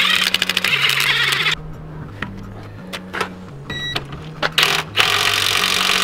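Ryobi cordless impact wrench hammering as it undoes a wheel's nuts, in a loud burst of about a second and a half, then a second burst near the end on a rusty suspension bolt. Background music with a steady bass line runs underneath.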